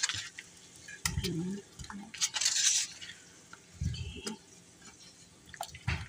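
Spatula stirring cheese slices into a thick milk-and-butter sauce in a metal pot, with a few sharp clicks against the pot and a short scrape about two and a half seconds in.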